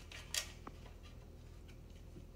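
A pencil and ruler working on a painted wooden picture frame while a one-inch mark is measured and drawn: one short scratch about half a second in, then a few faint ticks.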